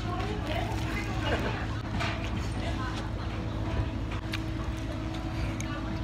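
Soft crunching and chewing as a deep-fried Korean corn dog with a crisp, potato-studded crust is bitten into. A few faint crisp strokes stand over a steady low hum and faint background voices.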